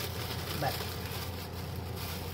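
Sliced onions and garlic sizzling in a pot on the stove, a steady hiss.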